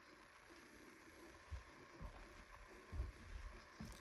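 Near silence with a few soft, low thuds of footsteps and hand-held camera handling.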